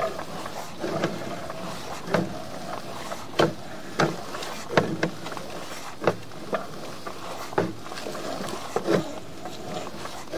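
Sewer inspection camera and its push cable being pulled back through the line, with sharp clicks and knocks about once a second at uneven spacing over a faint steady hum.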